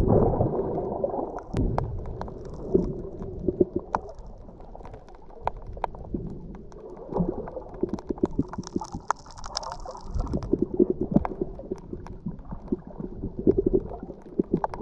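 Underwater sound from an action camera held beneath the surface: a muffled low rush of water, louder at the start and easing off after a few seconds, with scattered sharp clicks and crackles throughout.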